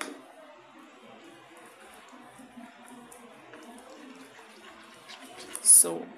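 Faint stirring of a wet clay paste with a metal spoon in a plastic bowl, the spoon scraping and working through the thick mixture.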